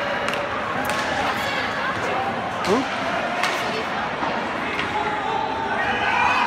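Ice hockey play in an indoor rink: several sharp knocks of sticks and puck on the ice and boards, over the murmur of spectators' voices.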